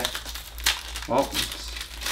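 Wrappers of hockey card packs crinkling as they are torn open and handled, with a sharper crackle about two-thirds of a second in.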